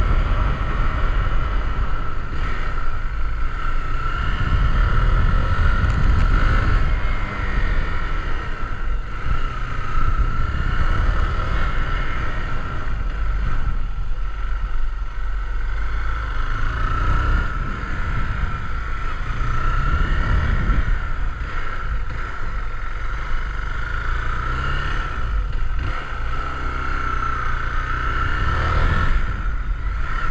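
Zontes GK 350 motorcycle's 350 cc engine running under way on a test ride, its pitch rising and falling several times as the rider speeds up and eases off.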